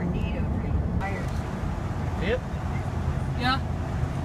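Steady low road and engine rumble inside a moving car's cabin at highway speed, with a few short voice sounds over it.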